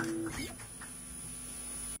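The last note of a song on voice and acoustic guitar dies out in the first half second. After that, faint electrical mains hum and a thin, steady high tone remain.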